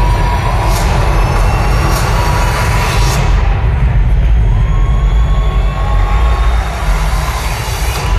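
Loud soundtrack of a video played over an arena's PA speakers, a deep rumbling bed with a drum hit about once a second for the first three seconds, then a steadier, duller drone.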